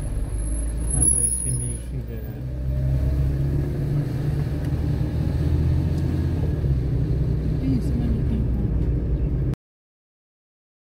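Steady low rumble of a car's engine and tyres, heard from inside the moving car's cabin. The sound cuts off abruptly about nine and a half seconds in.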